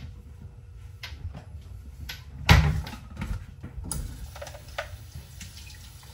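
Scattered clicks and knocks of a kitchen cupboard and plastic containers being handled, with one louder knock about two and a half seconds in.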